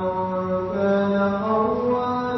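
A man chanting Quran recitation in Arabic, holding long drawn-out notes that slide slowly in pitch.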